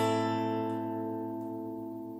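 Acoustic guitar A minor chord, barred at the fifth fret, left to ring and slowly fading, with no new strum.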